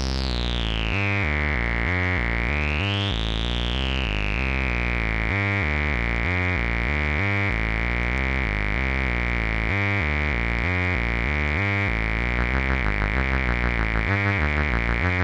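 A synthesizer sequence of repeating stepped bass notes played through the Random Source Haible Dual Wasp filter, with a bright resonant peak. The cutoff is swept down, up and down again in the first few seconds by hand and then held. Near the end a fast wobble sets in as an LFO modulates the filter through its CV Mode input.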